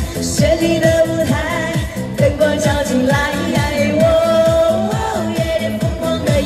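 A woman singing a Chinese pop song through a handheld microphone and portable amplifier, over a backing track with a steady electronic kick drum about two beats a second. She holds long notes, one with vibrato near the end.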